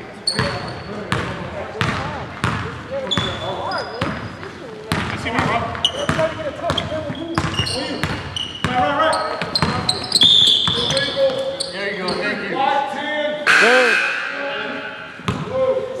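Basketball dribbled on a gym's hardwood floor: irregular thuds, about one or two a second, echoing in the large hall. Brief high sneaker squeaks on the court come in between.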